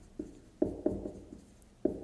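Marker writing on a whiteboard: a string of short strokes and taps as letters are drawn.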